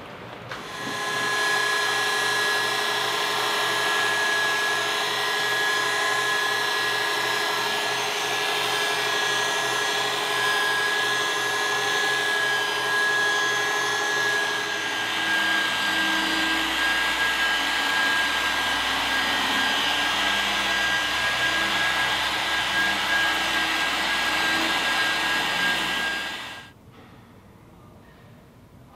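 Electric car polisher running steadily against paintwork, a high motor whine with a constant pitch. A second polisher joins about halfway through. The sound stops shortly before the end.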